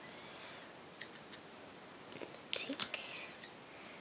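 Faint handling noise of rubber loom bands being pulled off the pegs of a plastic loom: a few soft clicks about a second in and a short cluster of small snaps and rustles a little past halfway.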